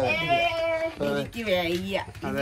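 A high-pitched voice calling out in a long drawn-out note, followed by lower, shorter voice sounds from the people around the cake.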